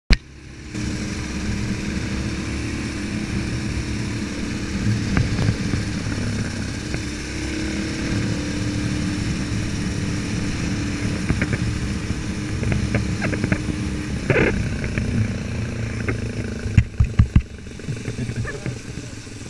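Kawasaki KLR dual-sport motorcycle's single-cylinder four-stroke engine running steadily while riding, heard close up from the bike, with a few sharp knocks near the end.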